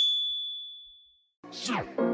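A single bright ding that rings and fades away over about a second, then a short silence; music comes back in near the end, opening with a falling sweep.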